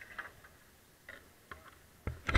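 Near quiet, with a faint low rumble and a few faint, short ticks and taps scattered through it.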